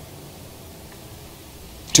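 A quiet pause: faint steady room hiss with nothing else distinct, then a man's voice starts speaking near the end.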